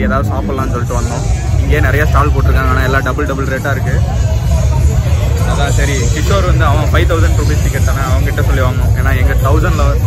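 A man talking close to a phone microphone, with a steady low rumble underneath.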